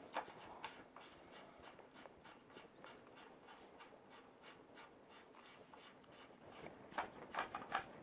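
Retainer nut being threaded back onto a Trimble GPS range pole by hand: faint light clicks and rubbing of the threads, getting louder and quicker near the end.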